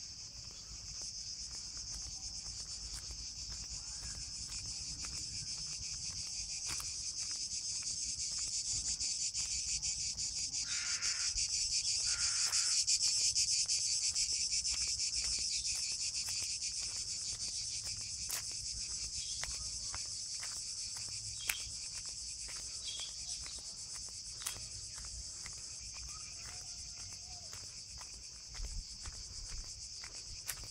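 A steady chorus of cicadas in the trees, swelling to its loudest about halfway through and then easing off, with faint crunching footsteps on gravel underneath and a few sharp clicks near the end.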